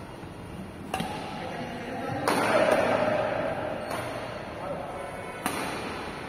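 Badminton racket strings striking a shuttlecock during a doubles rally, five sharp hits about a second apart, echoing in a large hall.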